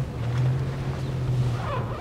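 A vehicle's engine running with a steady low drone under road and tyre noise, heard from inside the cab as it drives slowly.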